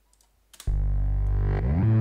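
A click, then a dubstep bass line from FL Studio's 3xOsc synth plugin starts playing about half a second in: a loud, sustained low synth bass run through overdrive and a Fast LP filter, with a rising sweep near the end.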